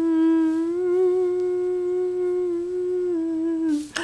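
A woman humming one long held note, its pitch wavering slightly, then stepping down and stopping just before the end.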